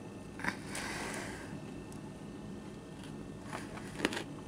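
A crisp snap as a bite is taken from a chocolate-dipped pretzel, about half a second in, followed by faint chewing.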